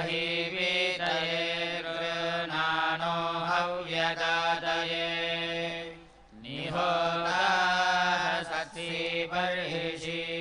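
A group of Vedic priests chanting the Sama Veda (Kauthuma recension) in unison, in long, held, melodic notes. The chant breaks off about six seconds in and resumes with a rising glide in pitch.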